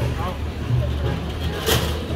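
Street ambience: faint chatter of passers-by over a steady low rumble, with a brief hiss about a second and a half in.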